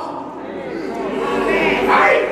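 Several voices singing together, holding a note, with a bending sung phrase near the end.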